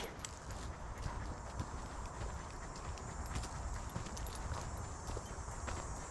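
Soft footsteps on a dirt forest trail: a person walking with a small dog trotting ahead on a leash. The steps are faint, a scatter of light scuffs and ticks over a low background hiss.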